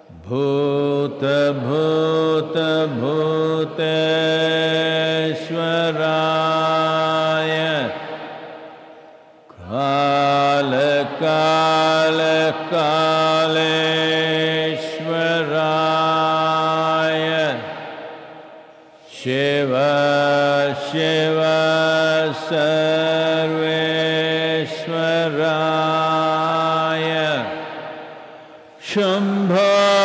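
A man's voice chanting a mantra in long held phrases of about nine seconds each, separated by short pauses for breath, three phrases in all.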